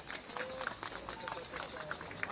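Handheld microphone being handled and passed from one person to another: irregular clicks and knocks from the mic body, with brief faint voices.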